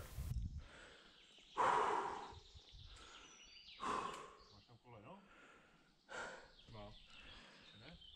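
A rock climber's sharp, forceful exhalations while pulling through hard moves on an overhang: three loud breaths about two seconds apart, with faint short voiced grunts between them.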